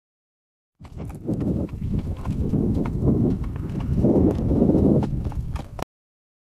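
AI-generated sound effect of a horse's hoofbeats mixed with wind, made by AudioX from a text prompt. It starts about a second in, runs densely with hoof clops over a low rumble, and cuts off suddenly near the end when the five-second clip stops.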